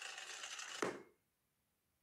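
Cartoon sound effect: a rapid mechanical rattle that ends in a short thump just under a second in, then cuts to dead silence.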